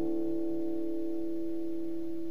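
Acoustic guitar's final strummed chord ringing out, fading slowly with no further strums, at the close of the song.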